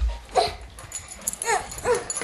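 A dog whimpering in short cries that fall in pitch, one about half a second in and two more near the end, after a low thump at the very start.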